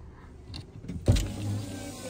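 Car sounds heard from inside the vehicle: one sharp thump about a second in, followed by a steady low hum.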